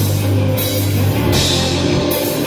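Live rock band playing: electric guitars, bass guitar and a drum kit with ringing cymbals.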